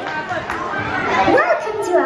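Children chattering and calling out over one another, several high-pitched voices overlapping.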